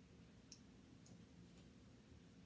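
Near-silent room tone with a low hum, broken by two faint, sharp clicks about half a second apart near the middle.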